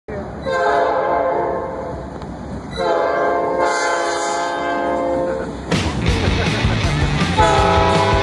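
Norfolk Southern diesel freight locomotive's air horn sounding two long chord blasts as the train approaches. About six seconds in, loud intro music comes in, and the horn sounds once more beneath it near the end.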